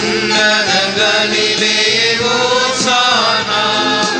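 Sung liturgical chant in Tamil: a voice with a gliding melodic line over steady held accompaniment chords.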